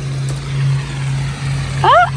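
Steady low hum with an even rush of falling water from the pool's wall fountains; a child's voice starts near the end.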